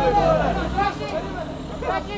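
People's voices calling out over the steady low running of a 1964 Unimog's turbo-diesel engine as it climbs a steep slope.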